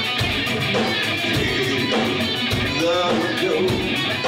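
A live rock band playing: electric guitars over a drum kit.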